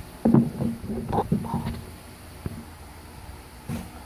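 Handling noise from a clipboard being picked up and brought into place: a cluster of short knocks and rustles, then a single sharp click about two and a half seconds in.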